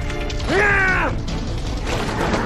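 A man's short yell of effort, about half a second long, rising then falling in pitch, over background music.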